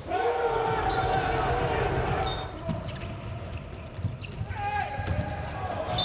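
A handball bouncing on an indoor court floor in repeated low thumps, with a sustained, voice-like call over it near the start and again later.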